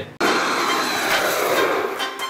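Jet airliner flyby sound effect: a rushing jet noise that starts just after a brief gap and sweeps downward in pitch as it passes.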